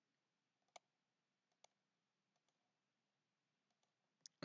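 Near silence with a few faint computer-mouse clicks, the clearest about three-quarters of a second in and another about a second later.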